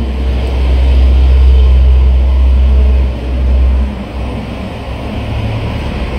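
A loud, steady low rumble that drops away about four seconds in.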